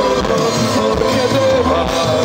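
Live rock band playing over a PA, with electric guitars, keyboards and drums, and the lead singer singing a wavering melody line over them.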